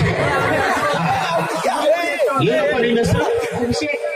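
Men's voices talking over one another in chatter, one of them amplified through a handheld microphone.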